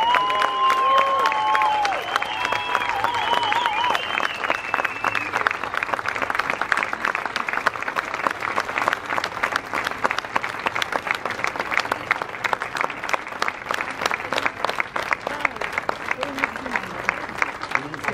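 A crowd clapping steadily, a dense patter of many hands. Over the first few seconds a few voices hold long high notes that fade out about five seconds in.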